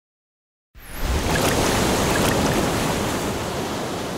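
Surf sound effect: a loud rush of breaking sea waves that starts suddenly about a second in and slowly fades away.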